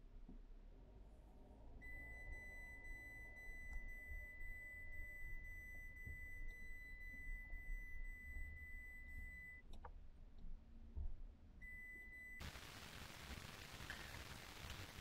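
A faint, steady high-pitched electronic tone that holds for about eight seconds, breaks off, and sounds again briefly, over a low rumble. Near the end a steady hiss sets in.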